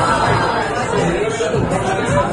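Several voices chattering over one another in a busy restaurant dining room.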